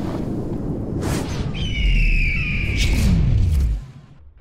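Sound effects for an animated channel intro. Rushing whooshes and a deep boom with a falling bass sweep play under a descending eagle-like screech, and all of it cuts off sharply just before the end.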